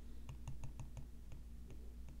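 Stylus tapping on a tablet's glass screen: a string of faint, quick, irregular clicks as handwritten strokes are removed one after another, over a low steady hum.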